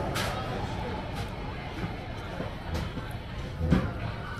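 Cafe dining-room background: a steady low rumble of diners' chatter with faint music, and a few sharp clicks, the loudest near the end.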